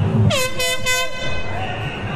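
An air horn blasts once: a loud, steady, high note that swoops down sharply as it starts and holds for a little over a second, over crowd voices.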